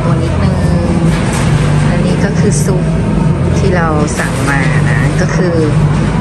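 Café ambience: indistinct voices of other customers over a steady low hum.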